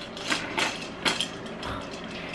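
A few light clicks and knocks of hard plastic as the rings and top cap of a Fisher-Price ring-stacking toy are handled.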